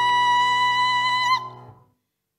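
A female classical singer holds one high, steady note over piano accompaniment. The note breaks off about one and a half seconds in, and the piano fades away to silence.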